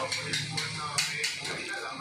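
Quiet background music with a soft, regular beat.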